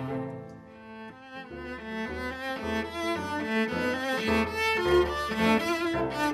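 Cello and piano duo playing classical chamber music, the bowed cello line over piano accompaniment. The music drops softer about a second in, then builds louder.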